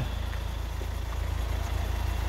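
Hyundai iX35's 1.7 four-cylinder diesel engine idling: a steady low rumble.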